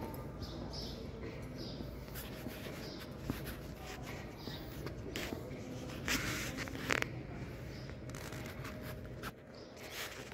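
Steady background hum of a large store interior, with scattered light clicks and taps and a brief louder rustling scrape about six seconds in.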